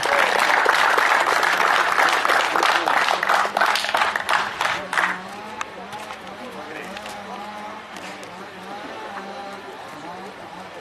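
An audience clapping for about five seconds after a first-place winner is announced, then dying away to quiet background talk.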